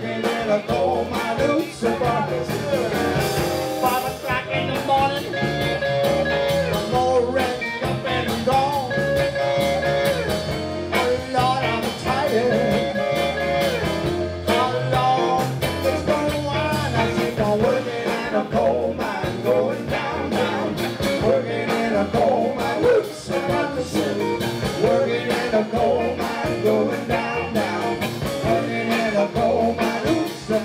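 Live band playing a blues shuffle, with a Yamaha CP stage piano among the instruments; the music is loud and steady throughout.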